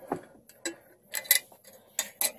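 Metal screw band of a glass mason jar being unscrewed: a few short separate clicks of metal on glass.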